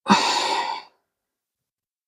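A woman's audible sigh: one breathy exhale lasting under a second.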